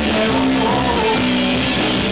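Rock band playing live, a strummed guitar to the fore over bass and drums.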